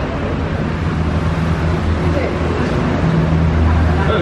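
Steady low engine hum of road traffic, swelling briefly near the end.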